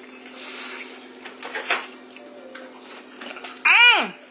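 A short vocal sound near the end that rises and then falls in pitch, over a steady hum, with a few clicks and rustles in the first couple of seconds.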